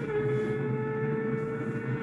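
Kawasaki ZX-6R 636 inline-four racing engine holding a steady high-revving note mid-corner, played back from onboard footage through a TV's speakers.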